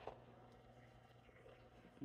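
Near silence: faint room tone, with one small click at the very start.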